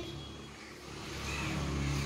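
A low, steady background rumble that grows louder through the second half.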